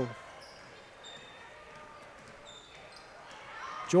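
Faint gym sound during a basketball game: a ball being dribbled on the court, with a few short, high squeaks of sneakers on the floor.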